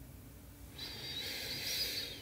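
A woman's audible breath, soft and airy. It starts under a second in and lasts about a second and a half.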